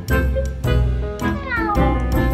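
A cat's meow, one falling call near the end, over bouncy background music.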